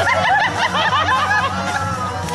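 Several people giggling and snickering in short, quick bursts, with some chatter mixed in, over a steady low hum.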